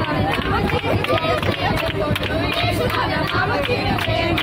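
A group of women and girls singing together and clapping along in a steady rhythm, about two to three claps a second, inside a bus.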